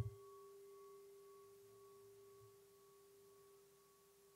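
A metal singing bowl struck once with a striker: a soft knock, then a steady ringing tone with a fainter, wavering higher overtone, slowly fading. It is rung to close the motivation meditation before the teaching resumes.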